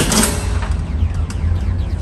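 Motorised target carrier running along its overhead track, bringing the paper target back to the shooting bench, with a whine that falls in pitch as it goes. There is a sharp knock at the start, over a constant low hum.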